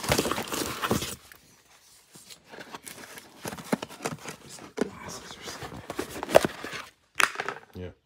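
Hands rummaging through a box of packaged goods: plastic wrap crinkling and small cardboard boxes shifting and knocking against each other in irregular bursts, with a sharp click about six seconds in.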